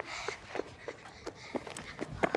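Children's sneaker footsteps on asphalt, quick uneven steps at about four a second as they run up a steep banked slope.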